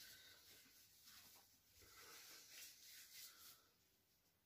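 Near silence with faint rustling and rubbing as gloved hands handle grocery items and packaging, dying away near the end.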